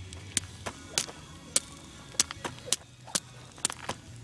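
A jump rope slapping the ground again and again as it is swung and jumped: about ten sharp slaps, unevenly spaced, some coming in quick succession.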